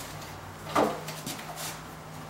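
A short knock from a plastic battery case being handled, a little under a second in, followed by a few faint clicks.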